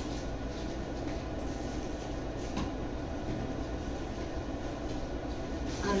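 Steady low rumble and hiss of background noise, with a couple of faint knocks.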